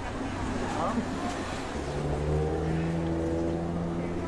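Street ambience with a motor vehicle's engine running, a steady low hum joined about two seconds in by a held engine tone, over background voices of people.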